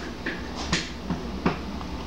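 Three sharp clicks of a computer mouse over a low steady hum, the later two louder.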